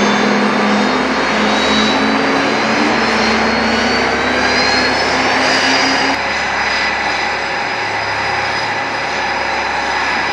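Jet engines of a Boeing F/A-18 Super Hornet running on the ground: a loud, steady roar with a high turbine whine that climbs slowly in pitch. The sound drops a little in level about six seconds in.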